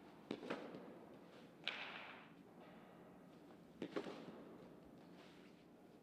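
Softballs hitting the turf and the catcher's mitt and protective gear in a blocking drill: a pair of sharp knocks just after the start, a single one a little under two seconds in, and another pair about four seconds in.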